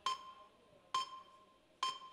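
Sparse background music: a single pitched note struck three times, about once a second, each ringing briefly and fading.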